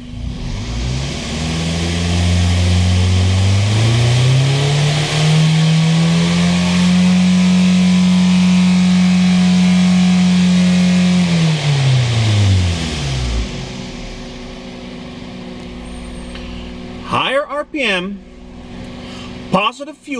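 A 2000 Toyota Previa's 2.4-litre four-cylinder engine is revved up from idle over a few seconds, held at high RPM, then let drop back to a steady idle about two-thirds of the way through. At the raised RPM the engine runs lean: the fuel trims climb to about +20% as the computer adds fuel, which the mechanic puts down to fuel pressure or the mass airflow sensor.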